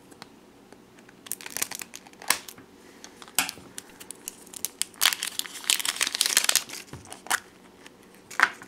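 Plastic shrink-wrap band on a plastic surprise egg being cut with scissors and torn off by hand: scattered crinkles and sharp clicks.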